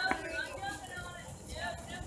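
Indistinct chatter of young children's voices, with one sharp click near the start.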